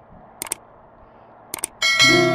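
Sound effects of a subscribe-button animation: two quick double mouse clicks about a second apart, then a bright notification bell chime starting near the end, over a faint hiss.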